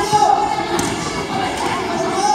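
Indistinct voices calling out and chattering, echoing in a large hall, with a short click a little under a second in.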